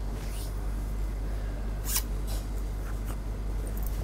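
A zip-up jacket being unzipped and taken off: a few short rustles and a zip, the sharpest about two seconds in, over a steady low room hum.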